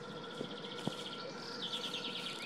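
A small songbird singing a fast, high trill, followed by a second trill starting about three-quarters of the way through, over a faint steady hum.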